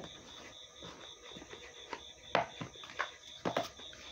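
Tarot cards being shuffled and handled: a few soft slaps and taps of the cards, the loudest a little past halfway, over a faint steady high whine.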